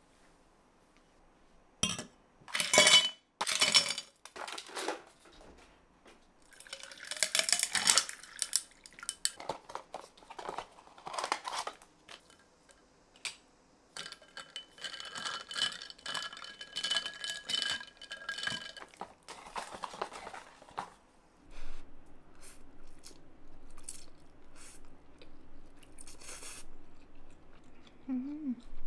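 Kitchen clatter: dishes and utensils knocked and set down on a counter, then ice clinking and ringing in a tall glass for a few seconds in the middle, and softer chopstick and plate sounds near the end.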